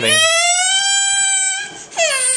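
A baby lets out one long, high-pitched cry lasting about a second and a half, its pitch rising slightly, and a second cry begins right at the end.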